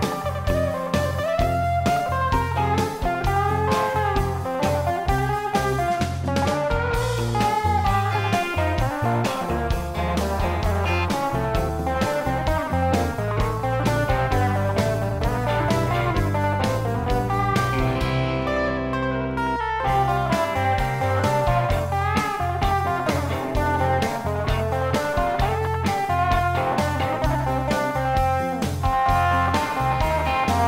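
Blues-rock electric guitar solo with bent, sliding notes, played on a Les Paul-style guitar over a backing track with bass and a steady beat.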